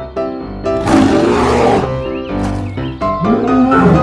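Three roars, starting about a second in, over background music with a steady melody; the roars are a dinosaur roar sound.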